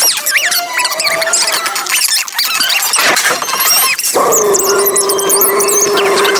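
Cartoon soundtrack played back at four times speed: a fast jumble of chipmunk-pitched squeals and music. About four seconds in it gives way to one long, steady high tone.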